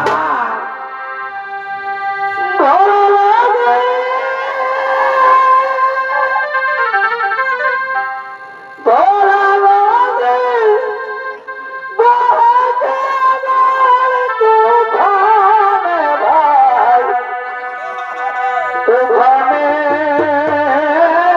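A chhau band's reed wind instrument, a shehnai, plays a loud wavering melody in several phrases with short breaks between them, while the drums are largely silent.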